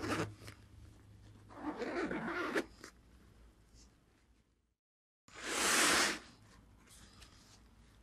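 Zipper on a camera backpack's rear access panel being unzipped as the panel is opened: one rasp about two seconds in, then a louder one midway.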